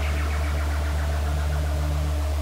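Electronic dance music in a beatless breakdown: a loud held low synth bass note with a softly pulsing tone above it, while a cymbal wash fades away.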